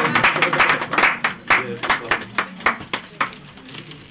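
A small group of people clapping their hands in irregular applause, mixed with talking voices. The clapping thins out and stops about three seconds in.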